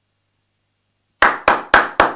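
A man clapping his hands in a quick, even rhythm: about four claps a second, starting about a second in after a stretch of dead silence.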